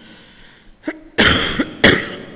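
A man coughing three times: a small cough about a second in, then two loud coughs close together near the end.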